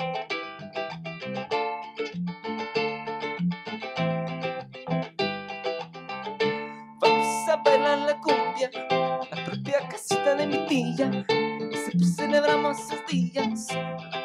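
Ukulele and electric bass playing a song live, with a man's voice singing over them from about seven seconds in.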